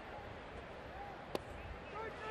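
Ballpark crowd murmur, then a single sharp pop about a second and a half in: a pitched baseball smacking into the catcher's mitt on a called third strike.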